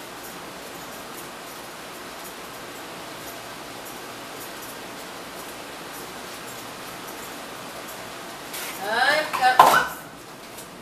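A cup dropped and clattering on a hard kitchen surface near the end, the loudest sound here, with a brief cry just before it. Before that there is only a steady faint hiss.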